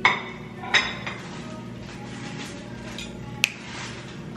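Dishes and kitchen utensils clinking: two sharp clinks in the first second and a third near the end, over steady background music.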